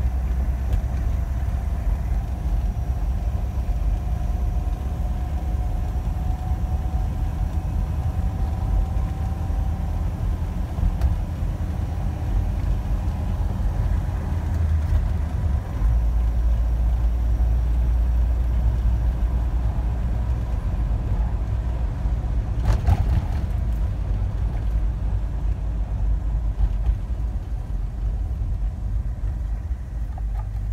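Cab interior of a 1987 Isuzu Pup pickup on the move: the gasoline engine and road make a steady low rumble. A faint whine rises slightly in pitch over the first ten seconds, and a single brief knock comes about two-thirds of the way through.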